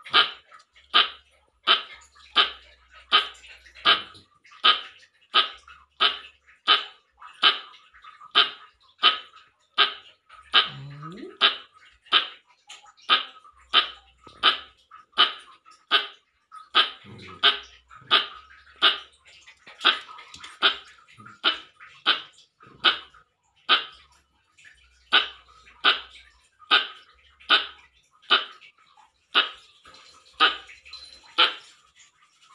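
Pet squirrel barking in a long, steady series of short, sharp calls, evenly spaced at about three every two seconds.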